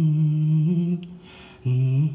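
A woman's voice humming a slow melody in long held notes that step up and down in pitch, with a short break about halfway through.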